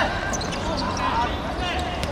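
Football being kicked and dribbled on artificial turf, with dull thuds of the ball, while players give short shouts; one call rises sharply at the start.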